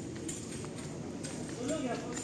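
Indistinct background voices in a large shop, with footsteps clicking on a concrete floor; a short voice sound rises near the end.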